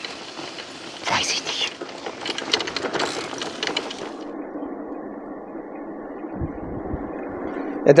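Wind and road noise from a loaded touring e-bike riding over a rough, potholed road, with a run of quick rattling clicks in the first half. About four seconds in it changes to a duller, steadier rush.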